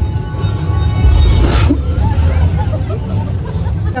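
Deep, steady rumble of a moving studio tour tram, with a sharp hissing burst about one and a half seconds in.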